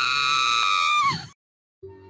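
A person's high-pitched scream, held steady and then falling in pitch as it breaks off about a second in.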